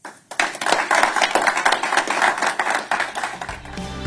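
A small audience applauding, a dense patter of many hands clapping. Music with a steady low bass comes in near the end as the applause fades.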